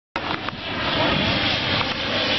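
Engine noise of a twin-engine water bomber airplane flying overhead, a steady noisy drone that grows louder over the first second.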